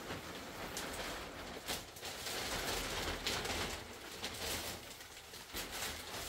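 A large printed plastic floor cloth (sofreh) rustling as it is lifted, shaken and folded by hand, loudest in the middle of the stretch.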